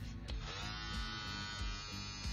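Gamma+ Cyborg hair clipper's brushless motor switching on about half a second in, then running steadily with a really quiet, even hum. Background music plays underneath.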